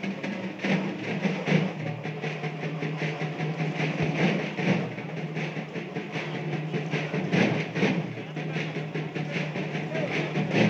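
Rhythmic percussion with a steady low drone underneath and a mix of voices.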